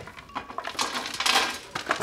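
Chopped fragments of plastic army men pouring out of blender jars onto metal sheet trays: a scattered pattering and clattering of small hard pieces, with a denser rattle a little past the middle.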